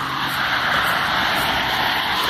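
Loud road traffic passing close by: a steady rush of tyre and engine noise from passing vehicles.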